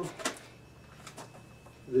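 Scissors cutting into a plastic blister pack: a few faint, short snips.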